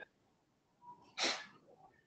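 A single short, sharp burst of breath noise from a person, a little over a second in, lasting about a third of a second.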